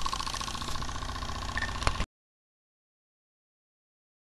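Model live-steam traction engine, a D.R. Mercer Type 2 fired by methylated spirits, running steadily with a fast, even beat. It ends with a sharp click and then cuts off abruptly about two seconds in.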